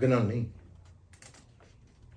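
A man's voice briefly at the start, then a series of faint, irregular light clicks.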